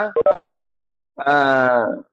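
A man's voice: the end of a spoken phrase, a short dead-silent gap, then one drawn-out vowel held steady, falling slightly in pitch, for most of a second.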